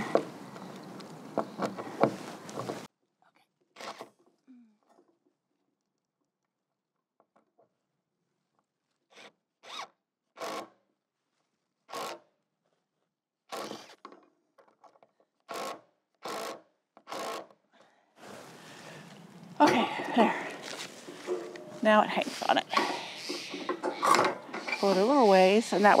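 Cordless drill driving wood screws into a wooden shed wall: about ten short bursts, each under half a second, with near-silent gaps between them.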